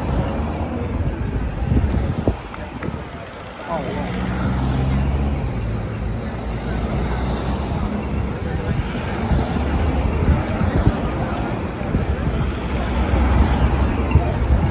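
A convoy of team support cars driving past one after another, with steady engine and tyre noise and a low rumble throughout, over the voices of a roadside crowd.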